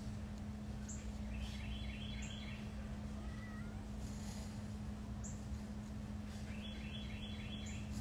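An animal calling twice, each time a short run of about four quick repeated notes, over a steady low hum.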